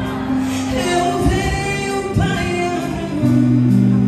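A woman singing a gospel song through a microphone, over an accompaniment of long, held chords.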